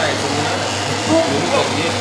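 Single-disc floor buffing machine running steadily with a cloth under its pad, working oil into parquet and drying off the excess.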